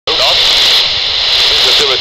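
Brisbane ATIS airband broadcast on 125.5 MHz heard through a handheld scanner's speaker: a voice reading airport information, faint under a steady radio hiss.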